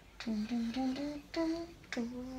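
A young woman humming a short tune with closed lips: several brief notes stepping up in pitch, then a slightly higher note, and another note beginning right at the end.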